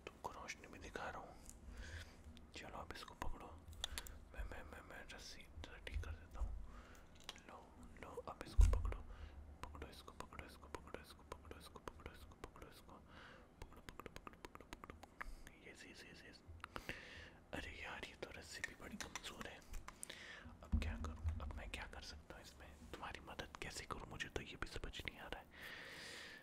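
A man whispering close to the microphone, with scattered small clicks and rustles of handling near it and a few low bumps, the loudest about nine seconds in.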